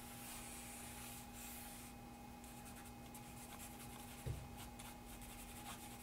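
Faint scratching and rubbing of a charcoal stick on drawing paper, in many quick short strokes as striations are drawn into the iris. There is a soft knock about four seconds in, over a steady faint hum.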